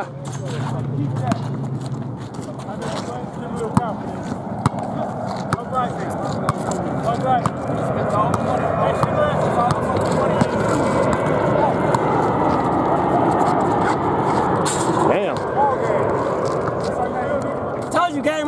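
Many overlapping voices of players and onlookers talking and calling out during a basketball game, with scattered short knocks from a basketball bouncing on the asphalt.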